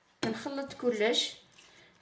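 A woman's voice speaking briefly, words the recogniser did not catch, then a quiet stretch for the last half second or so.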